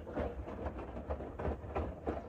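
Bosch Serie 6 front-loading washing machine running a load of towels, its drum turning with a low, uneven thumping.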